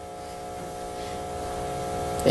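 A steady buzzing hum made of several fixed pitches, slowly getting louder.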